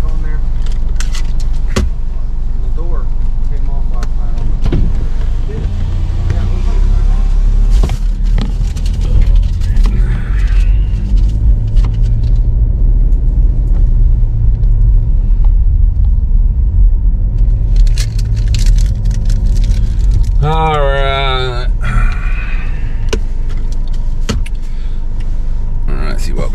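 Inside a car: a steady low engine and road rumble, heaviest through the middle, with scattered small clicks and rattles. A short stretch of voice comes in a little past the middle.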